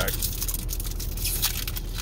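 Foil Pokémon booster pack wrapper being torn open and crinkled in the hands: a quick run of sharp crackles and rips.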